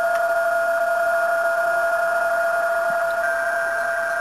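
Yaesu FT-847 transceiver's loudspeaker playing PSK digital-mode signals: steady tones over band hiss, with another signal starting at a slightly higher pitch about three seconds in.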